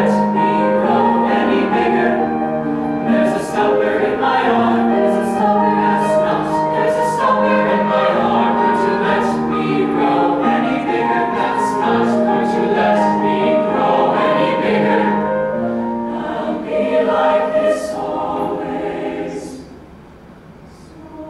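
Mixed youth choir singing in parts, with held chords and crisp sung consonants. The singing falls away sharply just before the end.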